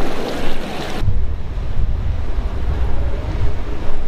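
Wind buffeting the camera microphone: a loud, rough low rumble that sets in suddenly about a second in. Before it comes a brief rushing hiss.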